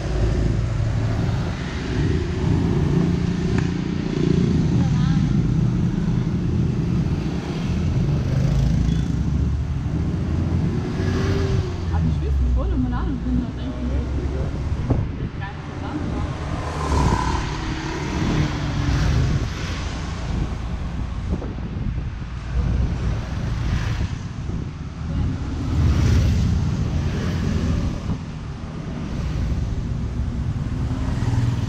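Ride noise from inside an open-sided shuttle cart moving along a town street: the cart running, with the steady low noise of wind and road and passing traffic.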